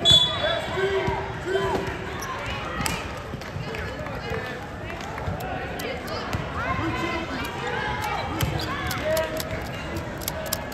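Wheelchair basketball play echoing in a large gym: a basketball bouncing on the hardwood floor, short clicks and knocks, and scattered voices of players and onlookers. A sharp loud sound comes right at the start.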